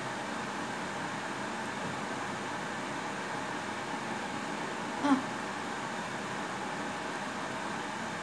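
Steady whooshing background noise, with one short vocal sound about five seconds in.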